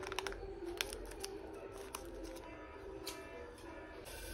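Scissors snipping open a plastic milk pouch: a scatter of faint clicks and crinkles, thickest in the first half second. Faint background music runs underneath.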